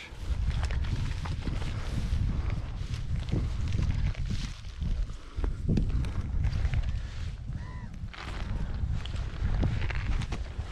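Footsteps and a dog's movement through tall, wet marsh grass: blades swishing and brushing, with a low rumble on the microphone. A brief call rises and falls about eight seconds in.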